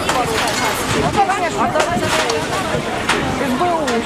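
A crowd of many voices shouting and calling over one another, with a few sharp cracks or knocks cutting through: near the start, about two seconds in and about three seconds in.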